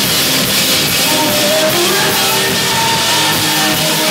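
A heavy rock band playing loud: electric guitars holding notes over a pounding drum kit, in one dense, steady wall of sound.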